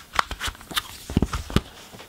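A boxed CD edition handled and flipped over on a tabletop: a quick string of light taps, clicks and knocks of the packaging against hands and table, stopping shortly before the end.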